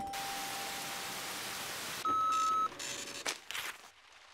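Cartoon weather-forecasting machine alarm: a couple of seconds of even hiss, then a single short electronic beep, followed by a few quick clicks. It signals a forecast of heavy rain.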